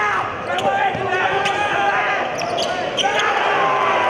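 Basketball bouncing on a hardwood gym court during play, with voices and short, sharp squeaks around it.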